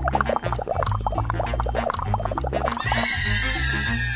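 Upbeat background music with a steady bass beat. Over it comes a run of short high-pitched yelps, then a long, slightly falling high squeal starting about three seconds in.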